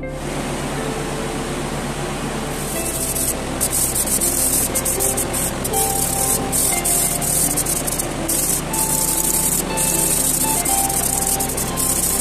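Paint spray gun hissing in repeated bursts with brief gaps between trigger pulls as gold paint is sprayed, starting a couple of seconds in, over background music.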